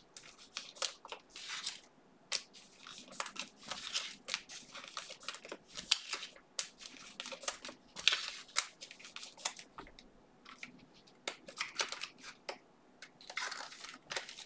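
Trading cards and a clear plastic sleeve handled by hand: irregular short rustles, slides and light flicks as cards are thumbed through a stack, with brief lulls about two seconds in and around ten seconds in.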